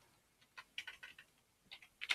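Faint keystrokes on a computer keyboard: about six scattered clicks, starting about half a second in.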